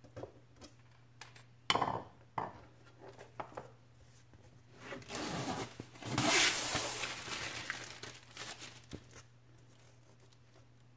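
Protective plastic film being peeled off a clear plastic panel: a long tearing rasp about five seconds in, loudest near the middle, after a few light clicks and knocks as the panel is handled.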